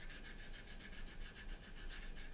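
Faint rubbing of a thinners-dampened cotton bud over sanded filler on a plastic model kit's seam, blending the filler edges into the plastic.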